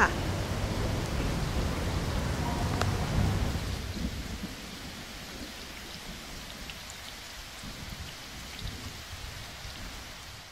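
Rain pouring down and splashing on a wet surface, with a low rumble under it for the first few seconds; after about four seconds the rain goes on more quietly.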